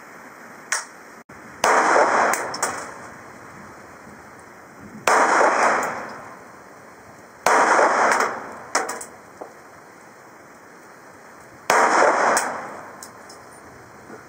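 A Ruger 22/45 .22 LR pistol fired four times, the shots spaced unevenly a few seconds apart. Each shot is a sharp crack followed by a short echo.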